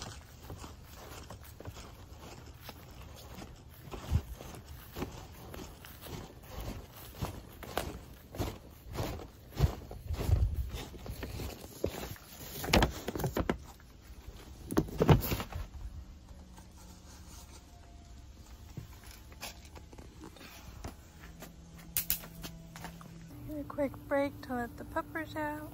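Footsteps walking across grass and stepping stones, short irregular steps for about fifteen seconds, then a quieter stretch.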